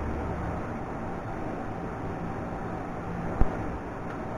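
Steady low rushing background noise, with one sharp click about three and a half seconds in as a camera is handled on a tripod head.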